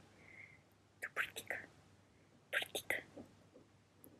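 A woman whispering softly in two short bursts, about a second in and again near three seconds.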